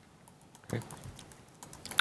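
Faint, quick clicking of typing on a computer keyboard, mostly in the second half, over quiet room tone.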